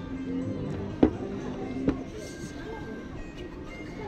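Two sharp knocks about a second apart, from a glass tumbler being set down on the table and cutlery against a plate, over background music and faint voices.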